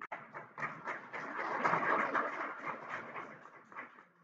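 Audience noise in a meeting room: a dense clatter of many small sounds that builds for about two seconds and then fades.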